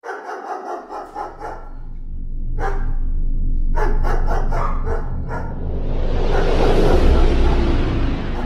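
Logo-sting sound effects: a quick run of dog barks in the first second and a half, and a few more around the third and fourth seconds. Under them a deep drone builds, swelling into a loud rush of noise near the end.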